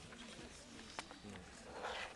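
Faint murmur of voices from a seated audience in a hall, with a single sharp click about a second in.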